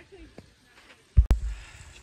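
A sharp knock and low thump of the phone being handled about a second in, then a faint, steady trickle of snowmelt water running out from under a log.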